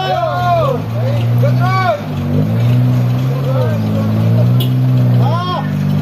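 A car's engine revving as it drives up a wet incline, its pitch rising and falling several times, with men shouting short calls over it.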